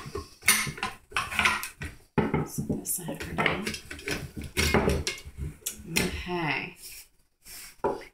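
Metal and wooden parts of a Remington 12-gauge shotgun clinking and knocking as the gun is taken apart by hand and the pieces are set down on a table. The knocks come irregularly, with a short pause near the end.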